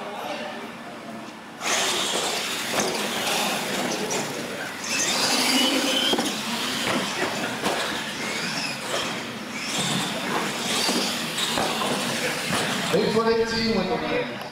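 Radio-controlled monster trucks launching and racing across a concrete floor: electric motors whining and tyres rushing, starting suddenly about two seconds in, with onlookers' voices mixed in.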